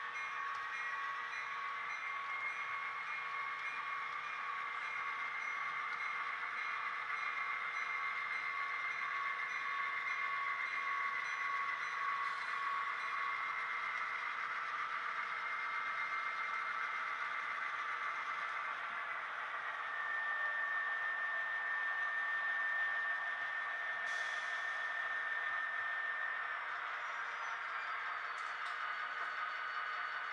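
HO-scale model freight train running past: a steady rolling and running noise with whining tones that shift in pitch about two-thirds of the way through.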